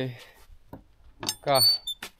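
A man's voice saying two short words, with faint clicks in the pause between them and a brief thin high-pitched tone near the end.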